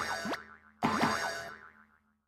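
Two cartoon 'boing' sound effects edited in, about a second apart, each a quick falling pitch glide with a ringing tail.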